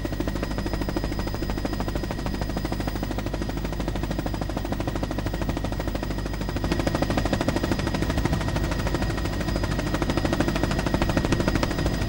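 Helicopter heard from on board: a fast, steady rotor chop with a thin high whine over it, getting a little louder about halfway through.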